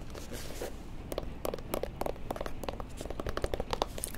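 Fingers handling a paperback book: irregular taps, scratches and crinkles on its cover and pages, growing busier toward the end.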